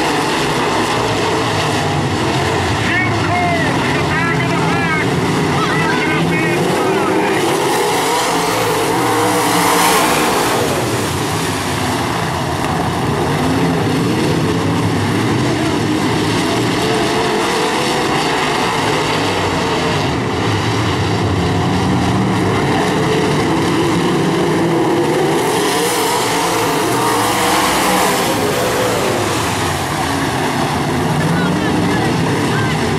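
Several IMCA Modified dirt-track race cars' V8 engines running around the oval, a loud steady blend whose pitch rises and falls as the cars pass, swelling briefly about ten seconds in.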